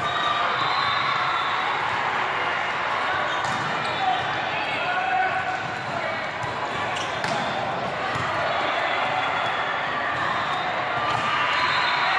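Reverberant babble of many overlapping voices in a large indoor hall, with a few sharp smacks of volleyballs being hit or bouncing.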